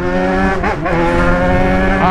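Yamaha XJ6's 600 cc inline-four motorcycle engine accelerating hard through its exhaust. A brief wobble in pitch under a second in, then a steady climb in pitch.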